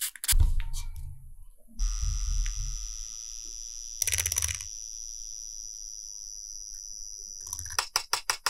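Small handheld electric mixer running steadily with its thin metal shaft in a cup of gouache paint, whipping the paint. The hum starts about two seconds in and stops just before the end, with a brief scraping burst about halfway through.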